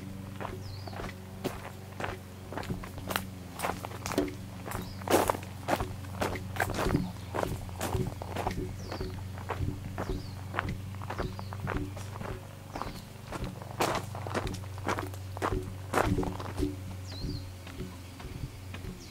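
Footsteps crunching along a gravel and dirt path at a steady walking pace, about two steps a second, over a steady low hum, with a few faint bird chirps.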